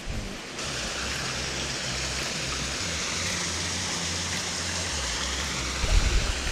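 Steady rush of a small waterfall and river water, even and unbroken, starting about half a second in.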